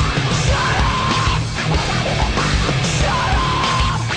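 Heavy rock music with shouted vocals.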